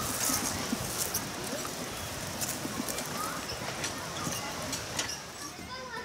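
Pedal go-kart rolling over dry dirt and dead leaves, its tyres crunching with many small irregular clicks and crackles.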